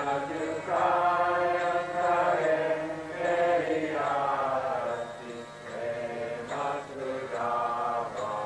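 Devotional mantra chanting: a sung chant in phrases of a second or two, the melody rising and falling, with short breaks between phrases.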